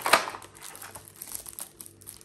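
Unboxing an external drive enclosure: its cardboard box and paper packaging are opened and handled, crinkling, with one loud sharp rustle just after the start and scattered smaller crackles after.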